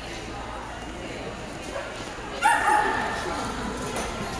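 A dog gives one sharp, high bark, a yip held about half a second, a little past halfway, over the murmur of voices in the hall.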